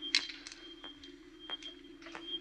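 Film sound effect of a motion tracker: a steady electronic hum under short pings, about three a second, the tracker signalling movement very close by.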